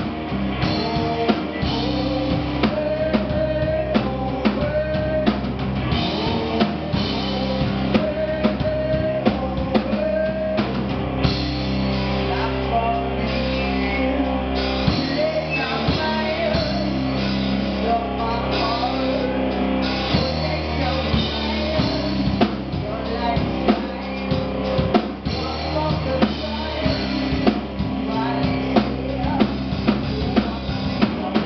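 Live rock band playing with electric guitars, bass guitar and a drum kit: a full, steady band sound with a regular drum beat.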